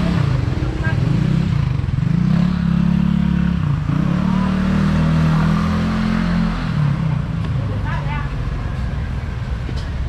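Honda NC750X parallel-twin motorcycle engine pulling away at low speed, its pitch rising, dipping briefly about four seconds in, rising again and then falling away about seven seconds in.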